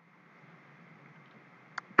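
A pause in speech holding only faint room hiss, with one brief click shortly before the voice resumes.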